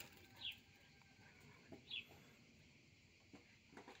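Near silence with two faint, short falling bird chirps, about half a second and two seconds in.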